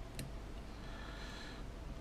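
One faint, sharp click from small pliers working a component lead on a small circuit board, then a soft breath-like exhale of about a second.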